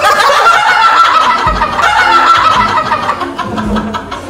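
Several people laughing loudly. One shrill voice holds a long squeal that slowly falls in pitch.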